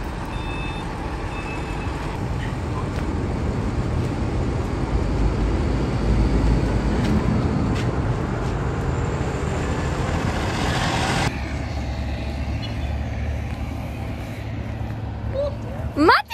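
Rumbling noise of a train standing at a station platform, slowly growing louder, with two short beeps near the start. It cuts off suddenly about eleven seconds in, leaving a quieter, steady low rumble.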